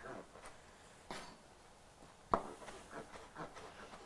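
Chef's knife chopping cooked quahog clams on a plastic cutting board: a few quiet knocks of the blade against the board, the sharpest about two seconds in.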